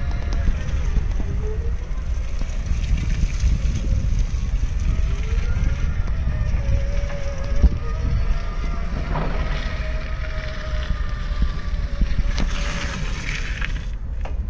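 Toyota 8FBMT16 electric forklift's drive motor whining, the pitch gliding up and down as the truck speeds up and slows while manoeuvring with a load, over a steady low rumble. A single sharp knock about seven and a half seconds in.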